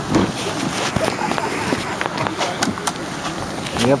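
Indistinct voices of several people talking and calling out, mixed with scattered clicks and knocks.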